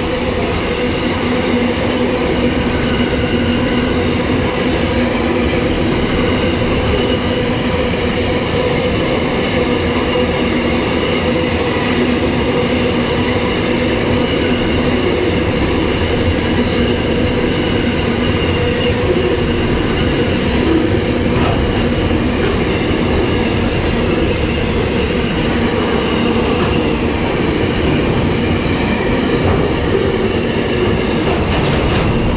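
Loaded container wagons of a freight train rolling past at steady speed, a continuous loud rumble of steel wheels on the track.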